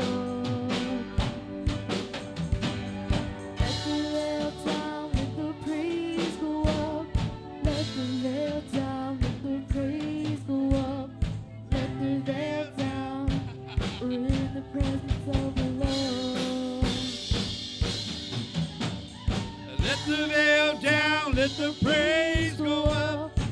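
Live worship band playing a song: a drum kit keeping a steady beat under acoustic guitar and keyboard, with a voice singing, most clearly near the end.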